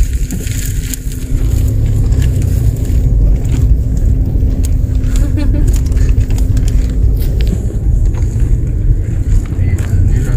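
Car cabin noise while driving: a steady low road-and-engine rumble with a low hum that fades out about two-thirds of the way through, and scattered clicks and rattles.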